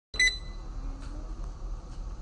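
A short electronic beep right at the start, followed by a steady low hum of room noise.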